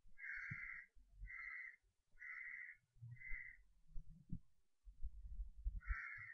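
A bird giving harsh calls: four in a row at about one a second, then another near the end. Faint low knocks and rumbles sound beneath them.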